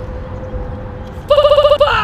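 Low rumbling noise with a faint steady tone, then about a second and a half in a loud electronic beeper gives a rapid warbling trill for about half a second, ending in a short falling tone.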